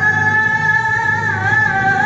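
A female Qur'an reciter (qoriah) chanting in the melodic tilawah style into a microphone. She holds one long, high note that wavers and dips slightly in pitch past the middle, then climbs back.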